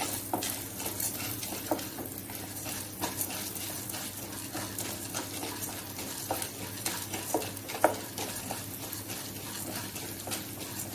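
Chana dal and urad dal frying in a little oil in a nonstick pan, stirred with a wooden spatula: a light sizzle under the scrape of the spatula and the clicking of the lentils against the pan. One sharper knock about eight seconds in.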